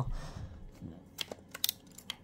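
A few light clicks of a screwdriver against the terminal screws and metal of a telephone's terminal block, most of them in the second half, as wires are worked onto the terminals.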